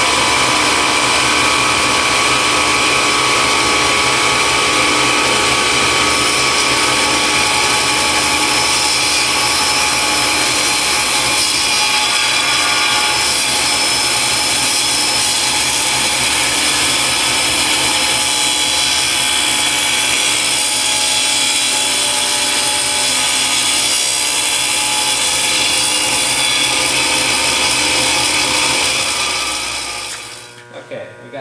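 Table saw running with its blade cutting through an acrylic sheet: a loud, steady, high-pitched whine and hiss that holds throughout, then drops off near the end.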